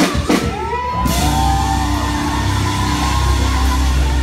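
Live gospel worship music played loud in a large hall: a few drum hits right at the start, then a steady bass under singers' long, sliding held notes.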